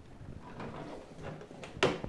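A single short, sharp knock near the end, over faint rustling and shuffling.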